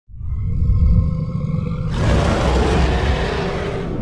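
Intro sound effects: a deep rumble under several steady high tones, then about two seconds in a loud rushing whoosh takes over and keeps going.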